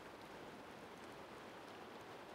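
Faint, steady rush of shallow river water flowing over stones, with no distinct events.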